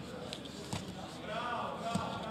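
Short punches landing with a few dull thuds as one heavyweight fighter strikes down from inside the other's closed guard, over background voices in the arena.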